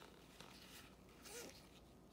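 Faint swishes of trading cards sliding against one another as gloved hands flip through a pack, a few soft rustles with near silence between them.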